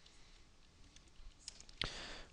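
A few faint keystrokes on a wireless computer keyboard, two short clicks standing out near the end, over quiet room tone.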